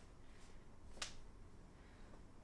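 A single short, sharp click about a second in, with a fainter tick just before it, over near-silent room tone.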